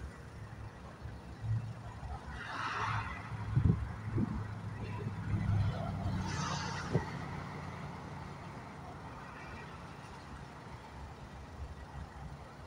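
Freight train moving slowly during switching, with a steady low diesel hum. Two brief swells of hiss come about two and six seconds in, and a few faint knocks sound before the hum slowly fades.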